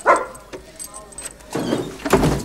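A dog barking once sharply at the start, with a faint whine about a second in.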